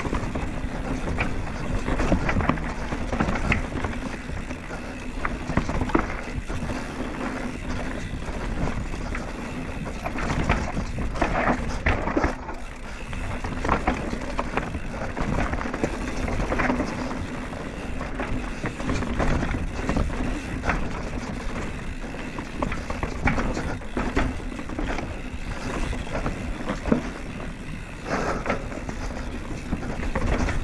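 Downhill mountain bike, a Banshee Scream, ridden fast down a dry dirt trail: tyres rumbling over roots and ruts, with the chain and frame clattering over every bump, over constant wind noise on the camera microphone.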